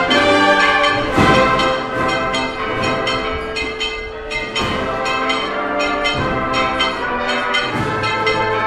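Processional brass band playing a slow march, brass carrying the sustained melody, with a few sharp loud accents.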